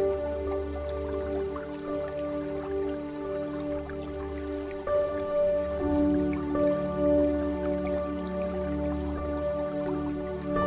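Slow ambient new-age music of long held synth tones over a low drone, with dripping water layered over it; the chord changes about halfway through.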